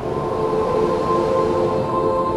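A rushing wind sound effect that starts suddenly and holds steady, with a few sustained musical tones held over it.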